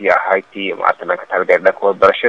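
Only speech: a man speaking into a handheld microphone, in steady, continuous phrases.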